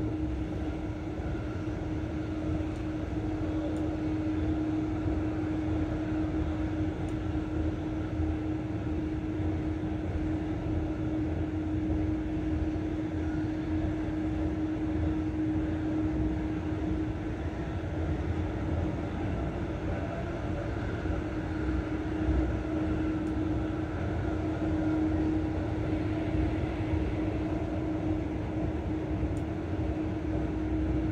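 Inside a passenger train carriage running at speed: a steady rumble from the train in motion with a constant low hum.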